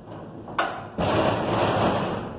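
PPA Jetflex electric gate opener driving a steel gate through its arm, with a sudden knock about half a second in and then a louder, noisy stretch of mechanical movement from about a second in.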